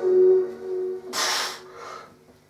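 A held note of background music fades out. About a second in comes one sharp, hissing breath, with a fainter one near the end: a bench presser's bracing breaths with the barbell held at arm's length, before lowering it.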